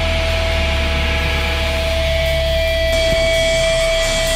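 Amplified electric guitar rig left ringing between songs: one steady held feedback tone over a low amplifier hum, with a fainter, higher tone joining about halfway through.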